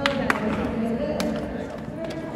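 Three sharp hand claps, the first the loudest, over a background of people talking in a large room.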